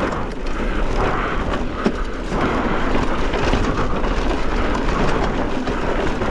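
Mountain bike riding a rocky dirt trail, heard from a camera on the rider. There is a steady rush of wind over the microphone, with the tyres crunching over gravel and many small clicks and rattles from the bike. One sharper knock comes a little before two seconds in.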